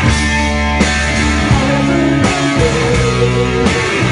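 Live rock band playing: electric guitars and bass over drums, with chord changes about every second. The sound is the unmixed feed from the side of the stage.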